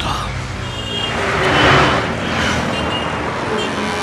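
Road traffic and vehicle noise as the point of view rushes along a city road, a rushing sound that swells about a second and a half in.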